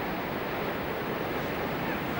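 Steady rushing rumble of a World Trade Center tower collapsing and its debris cloud spreading through the streets, heard through a camcorder microphone.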